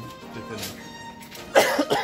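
A man coughs once, loud and close to the microphone, about one and a half seconds in. Under it, background music holds steady notes.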